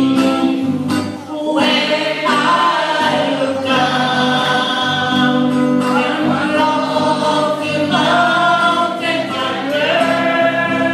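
A group of voices singing gospel music together, with sustained notes that shift pitch every second or so over steady low accompanying notes.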